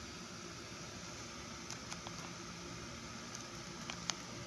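Faint ticks and crinkles of a homemade foil-and-tape toy dagger being handled, a few light clicks about halfway through and again near the end, over a steady hiss.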